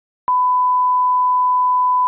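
1 kHz reference tone of a bars-and-tone leader: a steady, pure, loud beep that starts abruptly about a third of a second in and holds at one pitch.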